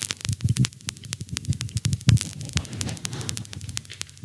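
A quick, irregular run of clicks over soft, uneven low thumps.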